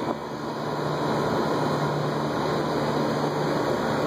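Trane Voyager packaged rooftop HVAC unit running, a steady mechanical hum with a low drone underneath, a little louder after the first second.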